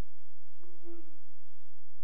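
A faint, hummed 'mm'-like voice sound, one steady tone lasting about a second and starting about half a second in, in an otherwise quiet pause.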